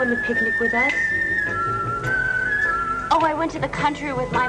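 Background film music carrying a high, whistle-like melody in long held notes that step down and back up in pitch.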